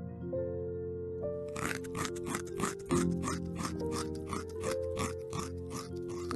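A rabbit chewing, a rapid crunching at about four bites a second that starts about a second and a half in, over gentle background music.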